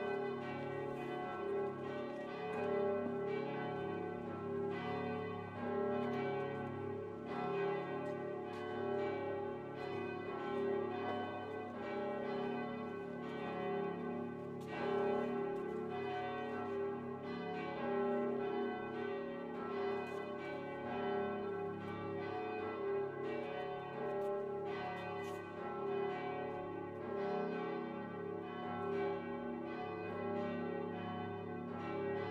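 Church bells ringing: several bells of different pitches striking in overlapping, uneven succession, making one continuous peal.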